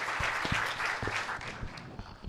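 Audience applauding, dying away toward the end, with a few short low thumps mixed in.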